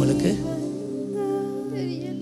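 Soft background worship music: a sustained chord held steadily, with a voice humming a short phrase over it about a second in.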